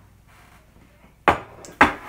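Two sharp knocks about half a second apart as the cheesecake's aluminium pan is set down onto a metal sheet pan, the second knock with a brief metallic ring.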